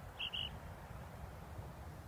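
Wind rumbling on the microphone, with two quick high-pitched chirps close together near the start.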